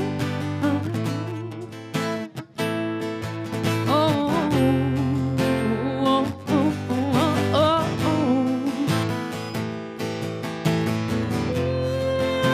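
Acoustic guitar strummed in steady chords, with a woman's voice singing long, wavering notes over it through a microphone.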